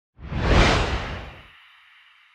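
Logo-reveal sound effect: a whoosh with a deep low rumble that swells quickly, peaks within the first second and fades over about a second, trailing off into a faint high ring.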